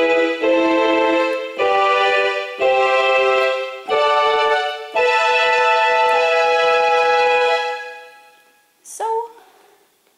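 Casio CTK-4200 home keyboard playing a layered strings-and-flute tone: a run of sustained chords changing about once a second, the last held for a few seconds before it dies away. A brief voice sound comes after it, near the end.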